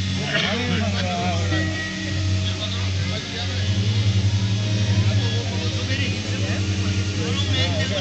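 Live qawwali music: a sustained low drone runs throughout, with a voice singing winding phrases over it.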